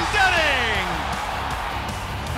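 A hockey play-by-play commentator's shouted call, held long and falling steadily in pitch over about the first second, then dying away into a steady background of arena noise and music.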